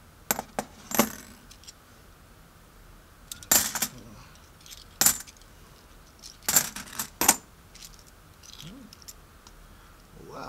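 Kennedy half-dollar coins clinking against each other as they are handled and sorted by hand. There are sharp separate chinks, a few of them in short quick clusters.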